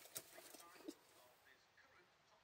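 Near silence with a few faint clicks, one just after the start and one about a second in.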